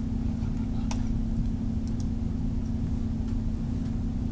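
A steady low hum with a few faint short clicks, about one and two seconds in.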